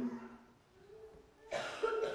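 A spoken word's tail fades at the start, followed by a near-silent pause and then a short cough about a second and a half in.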